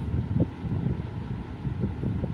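Steady low rumbling background noise, with a brief soft knock a little after the start.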